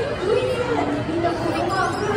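Voices talking, with audience chatter.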